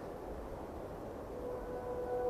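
Steady rushing ambience noise from the soundtrack, with held music notes fading in during the last half second.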